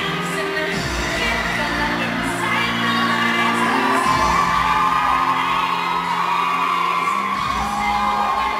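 Cheerleading routine mix played over loudspeakers: pop music with singing and heavy booming hits, with a few whoops from the crowd.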